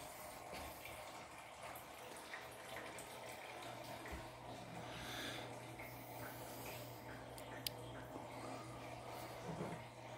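Quiet garage room tone: a faint steady low hum with a few light handling ticks and one sharp click about three-quarters of the way through.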